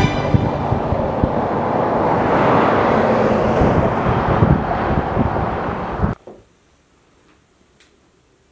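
Outdoor roadside noise, a rushing roar with low rumble that swells and eases over a few seconds, then cuts off abruptly about six seconds in. Near quiet follows, with a faint tick near the end.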